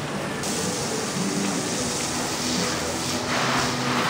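Pistol-grip hose nozzle spraying water onto a horse's wet coat: a steady hiss of spray that grows louder from about three seconds in.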